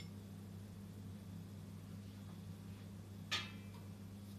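Faint steady low hum, broken about three seconds in by a single light clink of a metal spoon against a drinking glass as the last lemon juice is tipped in.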